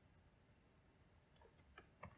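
Near silence with a few faint clicks of a computer keyboard, a handful of keystrokes in the second half.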